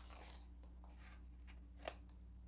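Near silence: room tone with a low steady hum and a single soft click near the end.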